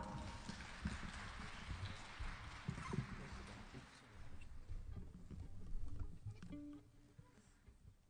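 Light, scattered audience applause that fades away over the first few seconds, with a few faint knocks. A short pitched note sounds about six and a half seconds in.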